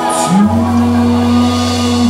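Live blues band playing an instrumental passage on electric guitar, drum kit and drawbar organ, with long held notes. A cymbal crash opens the passage, and a low note slides up about half a second in.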